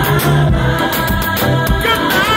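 Live gospel band music with singing over drums and bass guitar.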